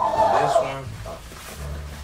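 A person's voice: a short, rough vocal sound, loudest in the first second and then fading.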